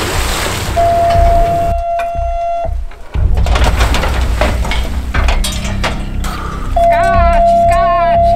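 Dive boat at sea: a low engine-and-water rumble under background music, with a steady held tone sounding twice. Near the end a man shouts "jump, jump" to send the diver in.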